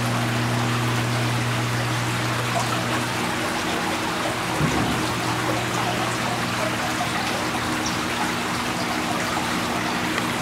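Water from wall fountains trickling steadily down slate panels into pebble-filled troughs, over a steady low hum. A brief low sound about halfway through.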